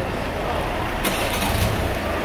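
A truck's engine running with a low rumble, with a brief hiss lasting about half a second, starting about a second in.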